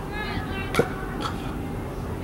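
Faint background voices, with one sharp knock a little under a second in and a weaker one soon after.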